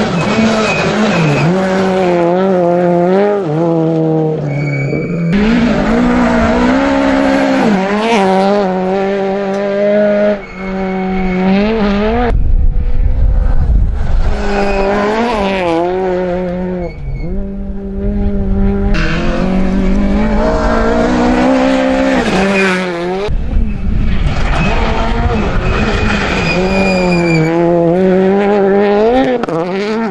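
Peugeot 208 R2 rally car's naturally aspirated four-cylinder engine revving hard over several passes, its pitch climbing and dropping again and again through gear changes and lifts. Loose gravel and tyre noise as the car slides through the corners.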